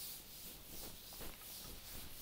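Chalkboard eraser (duster) rubbing across a chalkboard in quick back-and-forth wiping strokes, about three a second, faint.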